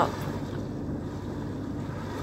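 Steady low hum of a river cruise ship heard inside a cabin: an even rumble with a faint constant low tone, no changes.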